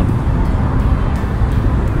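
Steady, loud outdoor noise of road traffic and wind on the microphone, with a low, fluttering rumble.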